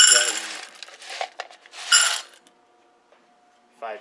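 Dry cat kibble poured from a plastic cup into stainless steel bowls: the pieces rattle against the metal and the bowl rings, in two loud pours at the start and about two seconds in, with a smaller clink between them.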